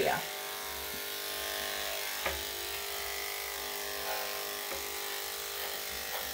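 Electric dog grooming clippers running with a steady hum as they shave the dog's damp coat around the hindquarters, with a couple of faint clicks partway through.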